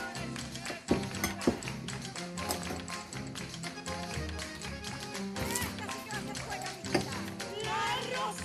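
Background music playing, with a few sharp taps of a spoon knocking against a drinking glass as ice cream is scooped into it, the loudest about a second in and again near the end.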